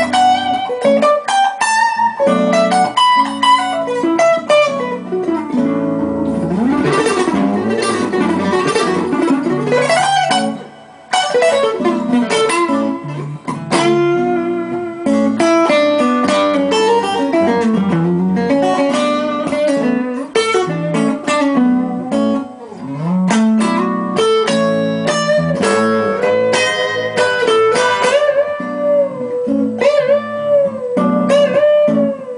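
Acoustic-electric guitar played through a Line 6 JM4 looper: a jazz-flavoured single-note melody over a looped bass and chord backing. The sound dips briefly about eleven seconds in, then carries on.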